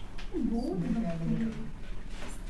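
A drawn-out vocal call that swoops down, up again, then holds a low pitch for about a second.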